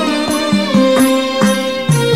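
Instrumental passage of a Malayalam Hindu devotional song: percussion keeping a steady beat under sustained melodic lines, with a low bass note that slides down and back up.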